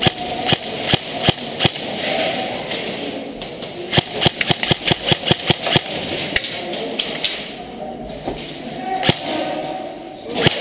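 Sharp shots from game guns in a skirmish match, coming in quick strings of about four or five a second, thickest in the middle and again near the end.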